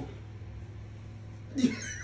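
A man's high-pitched laugh starting about one and a half seconds in, over a low steady hum.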